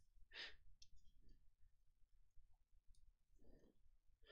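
Near silence, with a few faint breaths picked up by a headset microphone.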